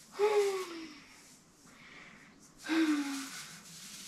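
A person sighing twice, each sigh sliding down in pitch, the second about two and a half seconds after the first.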